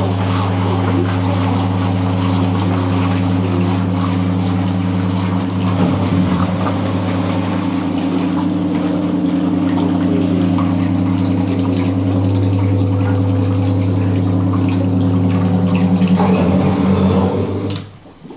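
Leafcasting machine running: a steady electric pump hum over rushing water as the pulp-laden water circulates and drains down through the mesh screen. Both stop abruptly just before the end.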